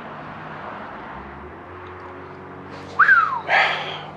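A single short whistle about three seconds in, rising briefly and then falling in pitch, followed by a short breathy rush, over steady room noise with a low hum.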